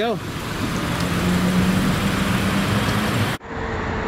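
Cars in a drive-through lane: a steady rush of traffic noise with a low, even engine hum through the middle. It breaks off at a sudden cut near the end, after which a higher steady hum continues.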